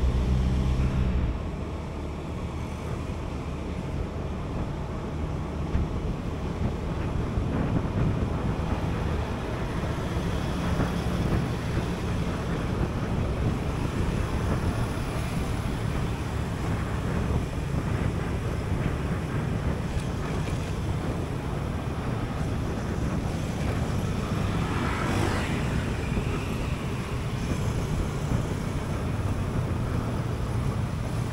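Wind rushing over an action camera's microphone while riding a Honda Beat scooter, its small single-cylinder engine running steadily beneath it, with road traffic around. A brief rising-and-falling sweep comes about five seconds before the end.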